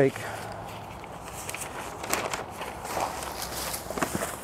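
Newspaper and a plastic bag being handled, rustling and crinkling in irregular crackles.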